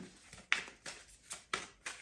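Tarot deck being shuffled in the hands: a handful of faint, short clicks and slaps of the cards against each other.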